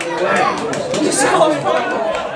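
Several voices talking and calling over one another.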